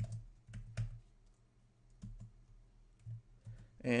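Computer keyboard keystrokes tapped out irregularly, a handful of clicks with pauses between them, over a steady low hum.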